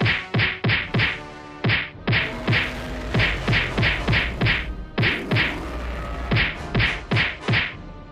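A rapid run of whacking punch sound effects, about twenty hits, two or three a second with two short pauses, over a faint steady low hum.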